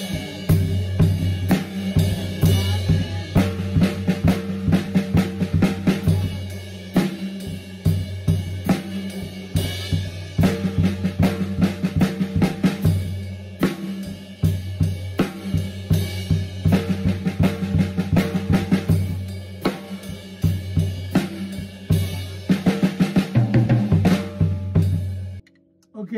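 Drum kit played at a slow tempo: a steady pre-chorus pattern of crash cymbal strikes over snare and bass drum, stopping abruptly about a second before the end.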